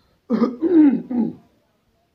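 A man loudly clearing his throat: a voiced, rasping sound in about three quick pulses lasting about a second.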